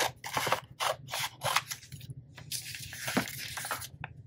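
Scissors cutting through a sheet of sublimation paper, a series of irregular snips.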